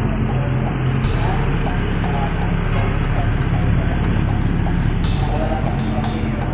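A vehicle runs with a steady low engine and road hum, with background music playing over it.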